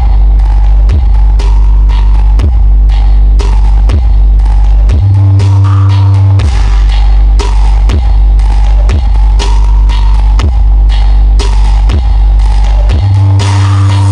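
Electronic dance music played at very high volume through a large truck-mounted sound system of stacked speaker boxes. It has a fast steady beat and heavy held sub-bass notes that jump up an octave about five seconds in and again near the end.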